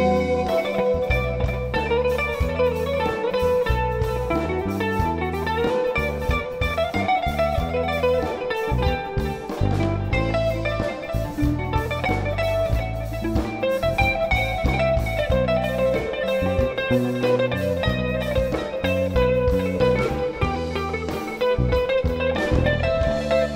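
Live jazz band: a hollow-body electric guitar plays a busy melodic lead line over walking electric bass notes and a drum kit.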